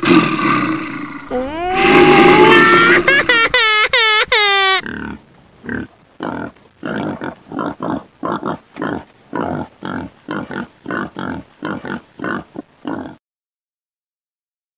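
Dubbed-in animal vocal sounds: a rough roar, then a quick run of high, swooping squealing calls, then a long series of short grunts about two a second that cuts off suddenly near the end.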